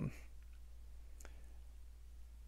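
Near quiet with a steady low hum, broken by two faint, brief clicks, about half a second and a second and a quarter in.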